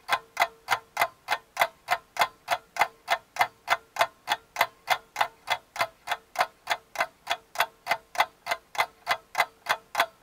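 Clock ticking sound effect: evenly spaced ticks, about four a second, over a faint steady tone.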